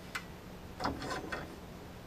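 A few light clicks and taps from the steel log stop on a Norwood LumberMate LM29 sawmill bed as it is handled and set down.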